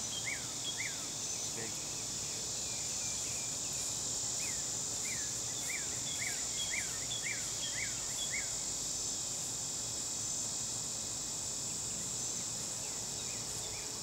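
Steady high-pitched drone of an outdoor insect chorus, with a run of short falling chirps, about two a second, that stops about eight seconds in.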